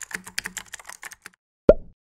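Computer keyboard typing sound effect, a quick run of key clicks that stops about a second in. Near the end comes a single loud plop.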